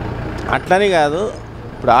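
A man speaking, in two short phrases, with a low background rumble beneath the voice at the start.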